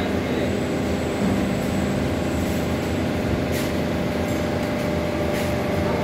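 Hydraulic press's electric motor and pump running with a steady hum, joined by a few brief hisses in the second half.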